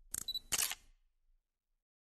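Camera-shutter sound effect accompanying a logo animation: two short shutter snaps about half a second apart.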